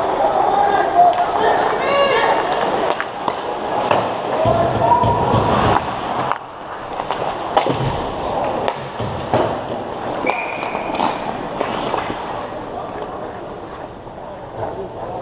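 Ice hockey play around the goal: skate blades scraping on the ice, several sharp clacks of sticks and puck, and players shouting in the first few seconds.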